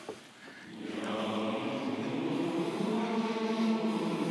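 A large group of barbershop singers singing a warm-up exercise together, coming in about a second in and holding a steady sustained pitch.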